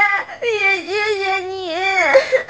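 A person crying aloud in long, wavering, high-pitched wails that dip and rise in pitch.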